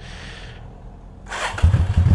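Yamaha Drag Star 650's 649 cc V-twin being cranked on the electric starter, catching about one and a half seconds in and settling into a loud, low, pulsing idle.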